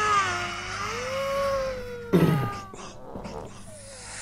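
A woman's voice drawn out in a long, wavering, cat-like meow that slides up and down in pitch and fades out about halfway through. A short, loud burst of sound follows about two seconds in.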